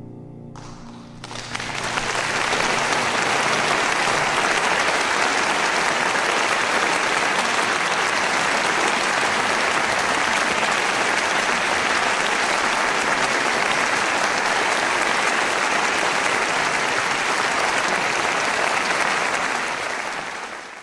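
The last chord of the piano and male voices dies away in the first second. Then a large audience breaks into applause that swells over about a second and goes on steadily.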